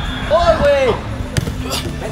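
Indoor soccer ball struck sharply about one and a half seconds in, with a second, lighter strike just after it. Before it comes a short, high-pitched cry.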